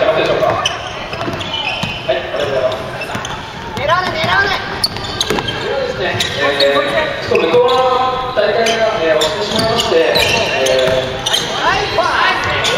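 A basketball being dribbled and bounced on a wooden gym floor during a game, with players' and onlookers' voices over it, echoing in the large hall.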